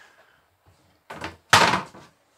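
An RV kitchen sink cover being lifted off the sink: a short scrape about a second in, then a louder knock-and-rub as the cover is moved.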